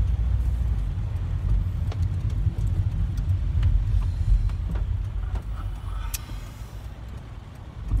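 Steady low rumble of road and engine noise inside a car cabin as the car drives, easing off a little over the last couple of seconds, with a few faint clicks.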